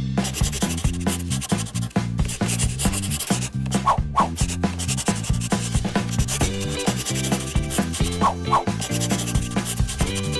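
Crayon scribbling on paper, a continuous scratchy rubbing, over background music with a stepping bass line.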